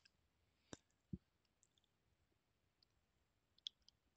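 A few faint computer mouse clicks in near silence: a sharp click a little before one second in, a duller knock just after, and a few soft ticks near the end.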